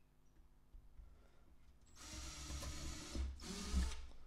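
Cordless drill with a 3 mm bit running and boring through two wooden craft sticks held in a jig, starting about halfway through and briefly easing off before a second short push.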